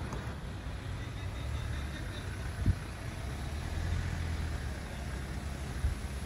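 Street ambience: a steady low rumble of road traffic. A sharp low thump about two and a half seconds in, and a smaller one near the end.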